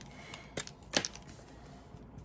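A few light clicks, about half a second and a second in, as a Wink of Stella glitter brush pen is uncapped and handled over a tabletop.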